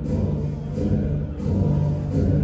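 Low, rumbling intro music over a concert PA, heard from the crowd: a steady low drone with a fast pulsing bass beneath it and little in the upper range.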